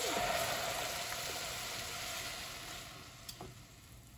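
Blended tomato sauce poured into a hot pan of browned onion and celery, sizzling hard as it hits the oil and dying down over a few seconds as the pan cools.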